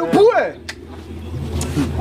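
A man's voice in the first half-second, then a low steady background rumble that swells near the end, with a faint click in between.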